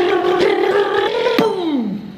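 A man's long, strained yell of effort, held on one pitch and then sliding down in pitch near the end as his breath runs out, with a sharp click partway through.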